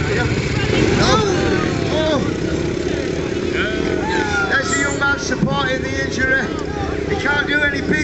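Dirt bike engines running as the bikes are ridden across grass, with voices over them.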